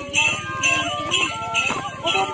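Folk dance music: a steady percussion beat, about two hits a second, under a high melody line that slides between notes.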